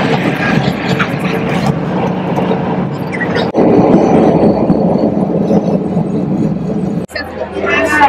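Road and engine noise inside a moving car's cabin: a steady rushing drone that breaks off abruptly about three and a half seconds in and again near the end, where voices chattering take over.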